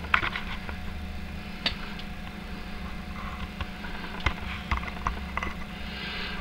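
Steady low hum with a few scattered faint clicks and taps, at no regular pace.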